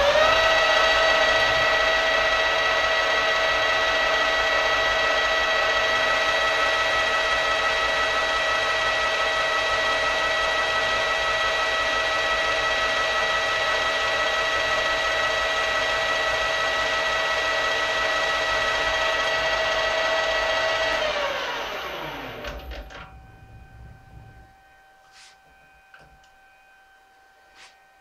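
Small metal lathe running at speed with a steady high whine from its motor and drive. About 21 seconds in it winds down, the whine falling in pitch as the spindle coasts to a stop, leaving a faint hum and a few light clicks.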